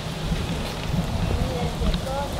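Wind buffeting the camera microphone in a low rumble, over crunching footsteps on a gravel path. Faint voices of people talking further off.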